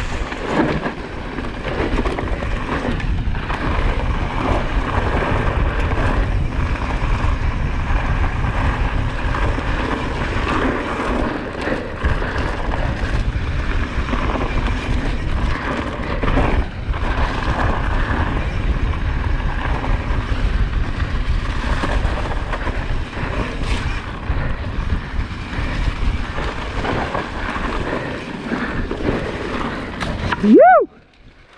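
Mountain bike descending fast on a dirt trail covered in dry leaves: the tyres rolling, with frequent knocks and rattles from the bike, under heavy wind noise on the microphone.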